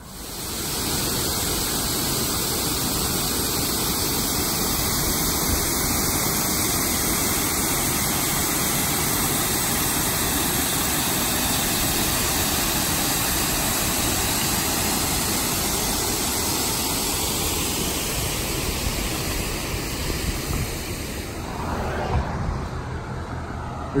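Water pouring over a low concrete mill-dam spillway: a loud, steady rush of falling water that eases a little near the end.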